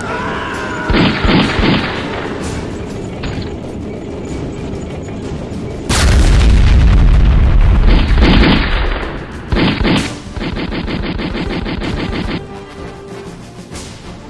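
Battle sound effects over music: bursts of gunfire early on, a loud explosion boom about six seconds in, and rapid machine-gun fire near the end.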